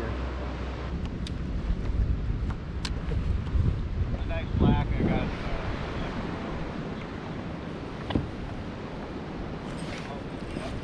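Wind buffeting the microphone on open water, with sea water lapping around a kayak and a few sharp clicks. A short wavering pitched call sounds about halfway through.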